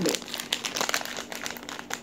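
Plastic Mie Bon Cabe instant-noodle packet crinkling as it is picked up and handled: a dense run of small crackles.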